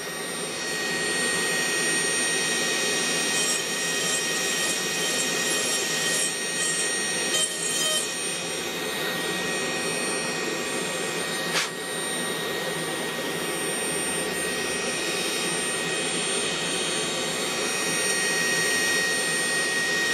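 SMC Tornado 1000 dust collector running steadily, with the high whine of a Gesswein Power Hand 3 carving handpiece spinning a small diamond bit that grinds into the wood as the feathers are thinned. There is a single sharp click about midway.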